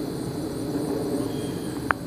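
A steady low drone of a distant engine, with a single sharp click near the end.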